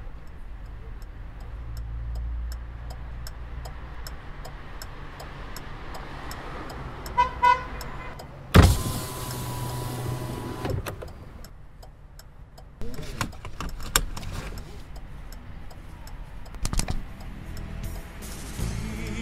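A car runs and draws up, its horn gives two short honks, then a power window whirs for about two seconds after a sharp knock. Several clicks and knocks follow later.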